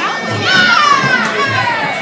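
Spectator at a kickboxing bout shouting one long, high call that slides down in pitch, over crowd noise in a hall. Two dull thuds sound under it.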